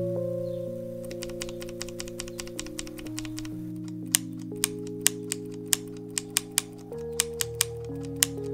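A single Kailh Jellyfish linear switch, its keycap removed, pressed and released repeatedly by a fingertip on a LOFREE 1% transparent keyboard. First comes a quick run of faint clacks, then louder separate clacks about two a second from about four seconds in. Background music with sustained chords plays under it.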